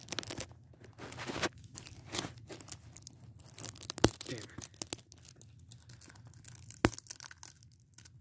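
Hands tearing and crinkling the wrapping off a Blu-ray case, an intermittent crackle with scattered clicks. Sharper snaps come about four and about seven seconds in.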